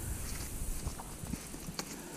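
Corn husks rustling and crackling as an ear of field corn is peeled open by hand, with a few short, sharp crackles.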